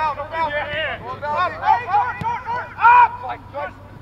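Men's voices shouting and calling across an outdoor soccer field, with one loud call near the end.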